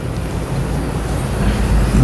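A low, steady rumble like that of a passing motor vehicle, growing louder toward the end.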